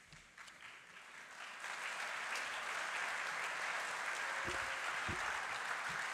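Audience applauding, starting as scattered claps and building within the first couple of seconds into steady applause. Two low thumps sound near the end.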